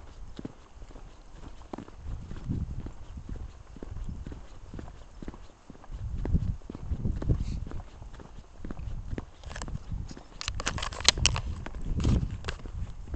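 Footsteps on a path of perforated concrete paving slabs, knocking along over a low, rumbling wind noise on the microphone. A run of sharper clicks and scuffs comes near the end.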